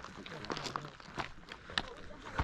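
Footsteps of a person walking on a stony gravel path, about three steps roughly half a second apart.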